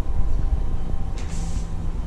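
A low, steady rumble with no speech, and a short hiss a little past the middle.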